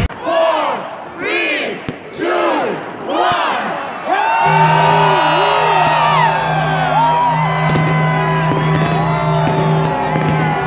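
Live band at an outdoor stage with a crowd. The beat drops out, and for a few seconds there are rising-and-falling voice calls and whoops. About four and a half seconds in, a sustained low note and long held higher tones come in and carry on.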